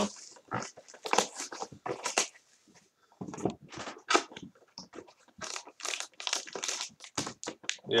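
Crinkling of torn wrapping and handling of a cardboard trading-card box: a run of short, irregular crackles and rustles.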